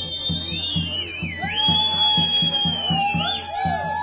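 Romanian folk dance music: a quick, steady beat of about three to four strokes a second under a high melody of long held notes that slide from one pitch to the next.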